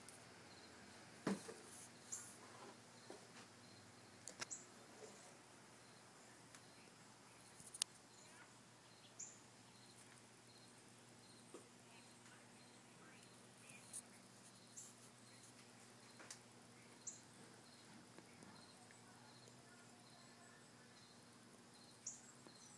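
Near silence: faint background ambience with a low steady hum, scattered soft clicks and a few brief high chirps.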